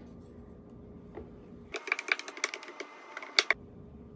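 A wooden spoon stirring punch in a plastic pitcher, knocking against the pitcher's sides in a quick run of clicks for about two seconds in the middle.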